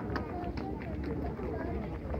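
Many people's voices chattering together, with footsteps on concrete and a steady low rumble underneath.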